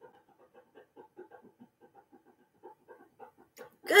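A dog panting faintly in quick, short breaths.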